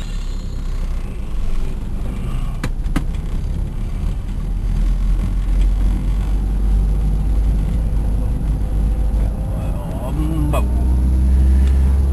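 Low engine and road rumble inside a moving car's cabin, with two sharp clicks about three seconds in.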